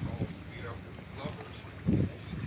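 Small boat's motor running at low speed, a steady low rumble with wind on the microphone, under indistinct voices; a short louder low burst near the end.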